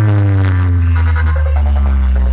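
Electronic dance music played loud through a large DJ speaker stack for a sound-box competition. It has heavy, sustained bass under a synth line that slides down in pitch.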